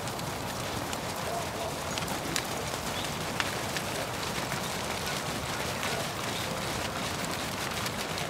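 Several horses moving over a sand arena: soft, muffled hoofbeats mixed into a steady noise, with a few faint clicks.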